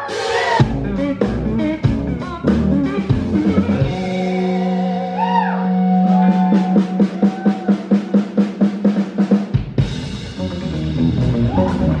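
Live band playing: electric guitar with bent notes and a bass holding one long low note over a drum kit. The drums build in a run of even, quick hits, then stop briefly and land on a loud crash about ten seconds in.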